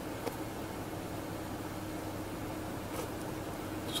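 A vehicle engine idling steadily as a low hum under a hiss, with two faint ticks, one about a quarter second in and one near three seconds.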